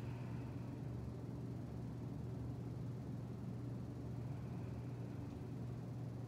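Steady low hum with an even hiss of air: electric fans running.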